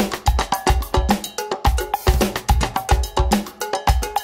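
Instrumental passage of an upbeat Latin dance track: a cowbell pattern over kick drum, bass and other percussion, with no vocals.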